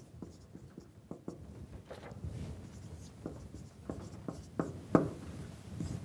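Dry-erase marker writing on a whiteboard: short scratchy strokes and light taps of the tip against the board as an equation is written out.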